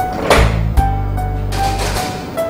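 Background music: held bass notes under a steady melody line, with a swell and a sharp hit early on.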